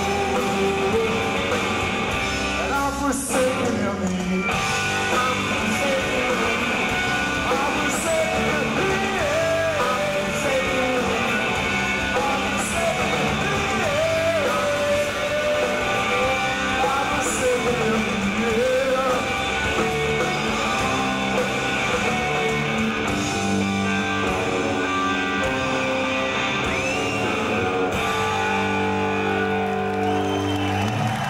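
Live alternative rock band playing a song at full volume, with electric guitars, electric bass and drums.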